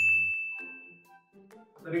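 A single bright, bell-like ding chime that rings out at the start and fades away over about a second and a half: a transition sound effect over the question title card.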